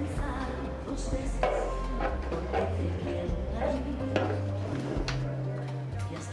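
Background club music with a strong bass line and a steady beat.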